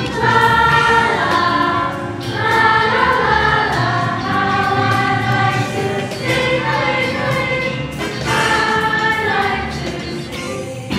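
A choir of children and adults singing long held notes in phrases.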